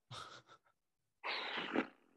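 A person's breathy exhalations into a close microphone: a short puff of air, then a longer one about a second later, like a stifled laugh.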